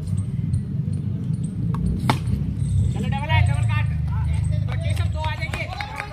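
A single sharp knock of a cricket bat hitting the ball about two seconds in, over a low rumble on the microphone, followed by players' voices calling out in short bursts.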